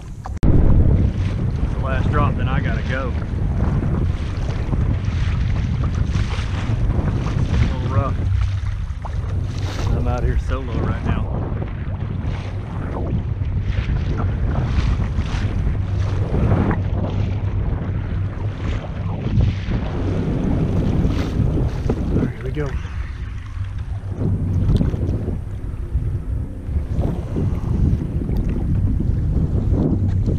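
Wind buffeting the microphone over choppy sea, with waves slapping and sloshing against a moving kayak's hull.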